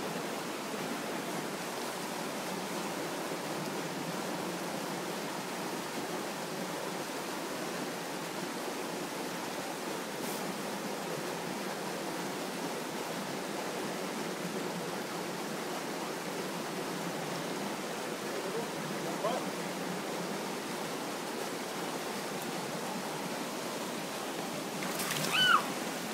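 Shallow stream running over rocks: a steady, unbroken rush of water.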